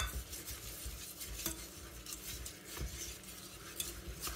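A wire whisk stirring and scraping thick choux pastry dough in a stainless steel pot, flour being worked into boiled water and butter over the heat. The metal whisk clicks irregularly against the pot, sharpest right at the start.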